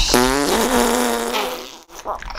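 A fart-like noise blown close up against the microphone: one drawn-out buzzing tone that rises briefly at the start, holds for over a second, then fades out.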